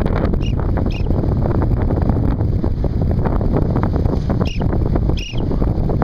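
Steady, loud wind rush on the microphone of a camera carried in paraglider flight. A few short, high chirps cut through it: two in the first second and two more near the end.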